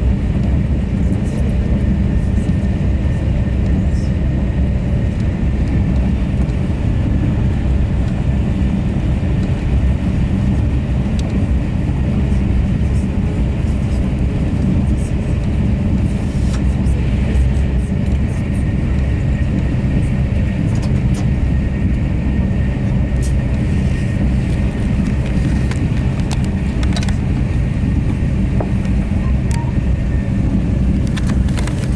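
Steady rumble of a Thalys high-speed TGV heard from inside the passenger car while running at speed, with a faint high whine and scattered light ticks over the low, even roar of wheels and air.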